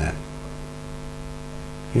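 Steady electrical mains hum: a low, unchanging buzz with many even overtones.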